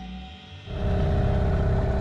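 Small outboard motor running under way on an inflatable dinghy, with rushing wind and water. It cuts in suddenly about two-thirds of a second in, after soft music.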